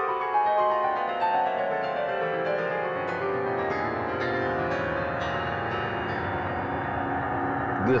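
MIDI piano playback of a solo piano piece from a laptop. It opens with a quick run of high notes falling downward. From about three seconds in, a dense, sustained cluster spreads down to the lowest note of the keyboard, showing the sound growing thicker from top to bottom.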